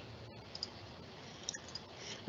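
Quiet room tone with a few faint, sharp clicks from computer controls, about half a second and a second and a half in, as the shared screen is switched over to a terminal window.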